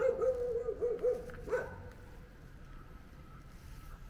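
A dog giving a wavering, drawn-out whining call that lasts about a second and a half and stops abruptly.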